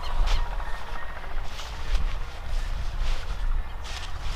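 Wind rumbling steadily on the microphone in an open field, with a few short rustles of lettuce leaves being handled.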